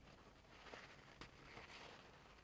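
Near silence: faint room tone with a couple of faint ticks.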